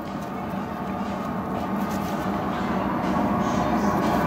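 A steady rumbling drone with a low hum, slowly getting louder.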